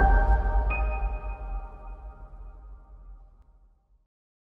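Logo-reveal music sting: a deep low hit at the start under a sustained synth chord, with a bright high ping entering under a second in, all fading out over about three seconds.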